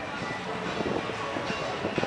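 Toyota Coaster minibus engine running as the bus drives slowly past, with music behind it.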